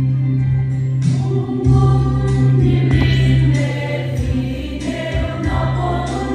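Mixed choir of men and women singing a hymn together in parts, held notes changing every second or so over a steady low line.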